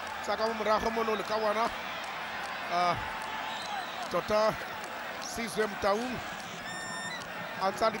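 A TV commentator speaking in short phrases over a steady murmur of a stadium crowd.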